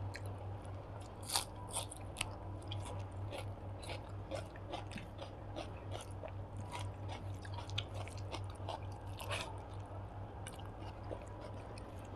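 Close-miked chewing of a hand-mixed mouthful of rice and curry: many small irregular wet clicks and crackles of the mouth, with the fingers working the rice. A low steady hum runs underneath.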